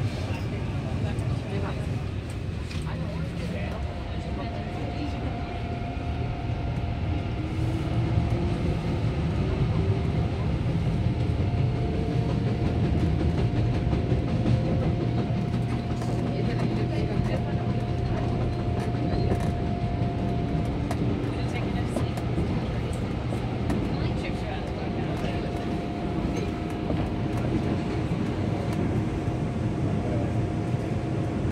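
Electric train heard from inside the car: its Toshiba IGBT VVVF inverter traction drive whines in thin tones that rise in pitch as the train accelerates, then holds a steady tone over the rumble of the wheels on the rails. A second rising whine comes near the end.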